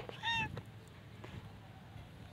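A cat gives one short, high-pitched meow just after the start.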